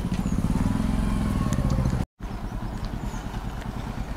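A small motorbike engine running close by, its pitch rising and falling gently. The sound cuts out briefly about halfway through, then the engine continues more quietly.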